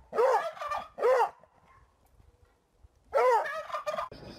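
Turkey gobbling: three short calls in quick succession, then another after a pause of about two seconds.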